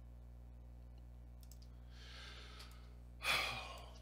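A man sighs into a close microphone a little after three seconds in, a breathy exhale that fades away. A softer breath comes about a second earlier, over a steady low electrical hum.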